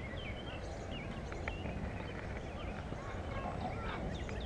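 Several birds chirping and calling in short, scattered slurs over a steady low background rumble of outdoor noise.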